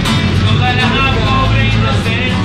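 Strummed acoustic guitar with a neck-rack harmonica playing a wavering melody line, over the steady low rumble of a city bus engine.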